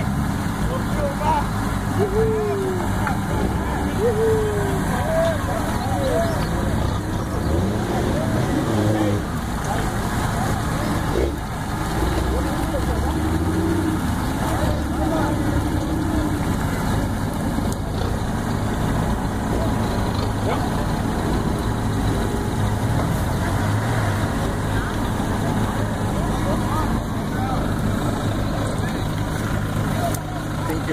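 An off-road 4x4's engine running steadily, with people's voices calling out in the background.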